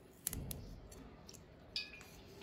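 Steel carving gouge cutting into a raw carrot: three crisp clicks as the blade bites through and small pieces snap away, the first the loudest.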